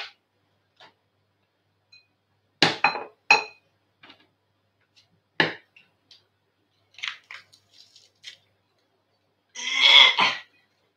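Metal garlic press being squeezed hard by hand: three sharp metallic clacks with a brief ring about three seconds in, another about halfway, and lighter ticks after. A louder rough sound comes just before the end.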